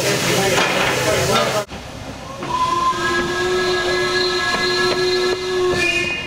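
Steam hissing from the locomotive over crowd chatter, then the steam whistle of Black 5 No. 44932 blown in one long, steady note of about three seconds as the train departs.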